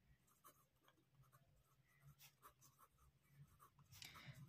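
Faint scratching of a pen writing on paper, in short, irregular strokes.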